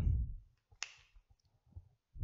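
A felt-tip whiteboard marker against a whiteboard: a dull low rub, then one sharp click a little under a second in.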